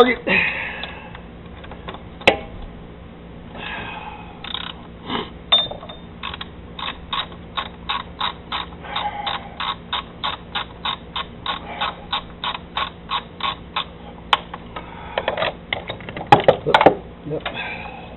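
Socket ratchet on an extension clicking steadily, about four clicks a second, as a throttle body bolt is backed out. Near the end come a few loud metallic clanks with ringing: the extension and socket falling down into the engine bay.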